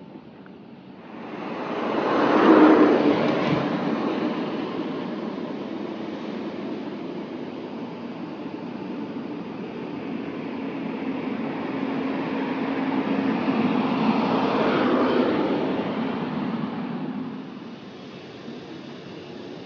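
A motor vehicle's engine and tyre noise close by on the street, swelling about a second in, holding, and swelling again before fading near the end.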